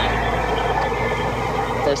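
A car engine idling at a drive-thru, a steady low hum under an even background noise.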